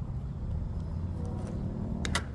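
Low, steady rumble of a diesel locomotive idling close by.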